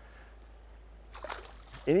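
Quiet outdoor background with a steady low hum. Just over a second in comes a brief, faint noisy sound, and a man's voice begins at the very end.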